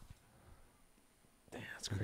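Near silence: a pause in conversation, with room tone only. A faint, soft male voice starts about a second and a half in, just before normal speech resumes.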